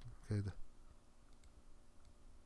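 A brief wordless voiced sound from a man, a short 'mm' lasting about a third of a second, comes near the start. A couple of faint computer-mouse clicks follow about a second and a half in.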